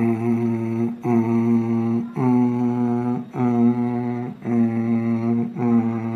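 A man singing a cappella in a low voice, without words: six held notes of about a second each, nearly on one pitch, with short breaths between them.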